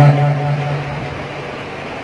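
A man's chanting voice holding one long, steady note that fades out about a second in, leaving a low, steady background noise.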